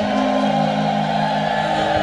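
Harmonium holding a sustained chord as kirtan accompaniment, a lower note joining about half a second in and a higher note near the end.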